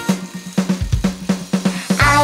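Drum break in a children's song: a drum kit plays an even beat of about five hits a second, with kick, snare and hi-hat, and no singing.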